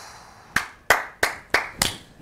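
Two men clapping their hands, a short run of about five even claps at roughly three a second, starting about half a second in.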